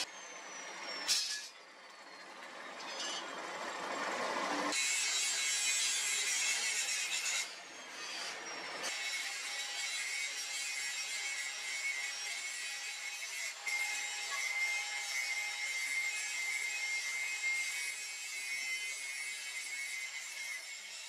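Coal forge fire blown hard by an air blast, a steady roaring hiss with a faint whine, as a machete blade heats to hardening temperature. A sharp click comes about a second in.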